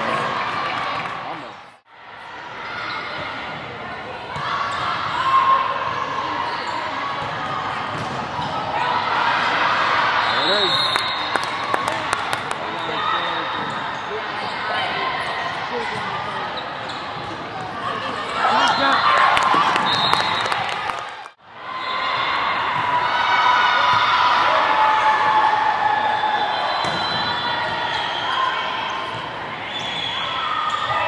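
An indoor volleyball match in a large gym: the ball is struck and hits the court, with players' and spectators' voices over the top. The sound drops out briefly twice, about two seconds in and again about twenty seconds in.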